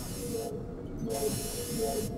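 Sci-fi spaceship ambience: a steady high hiss over a low rumble, cutting out for about half a second near the middle, with faint music underneath.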